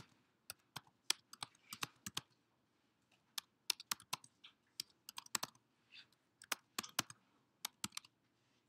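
Computer keyboard being typed on: irregular, faint keystrokes, a few a second, with short pauses between runs.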